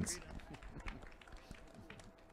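Faint outdoor audience ambience: a low background haze with scattered small clicks and knocks and a faint steady hum, with no clear voice or applause.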